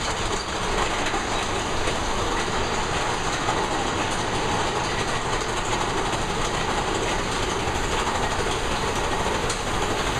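Big Thunder Mountain Railroad mine-train roller coaster cars running along the track, giving a steady rumble and clatter.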